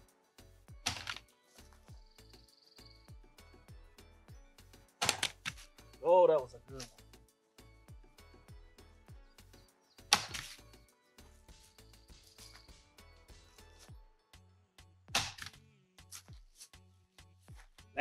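An empty PSA Dagger pistol with an ADE red dot mounted is dropped onto a board, giving four sharp impacts about five seconds apart.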